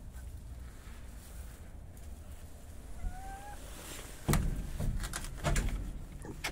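A feather-footed bantam chicken gives one short, soft call about three seconds in. From about four seconds in there is a run of loud rustling knocks.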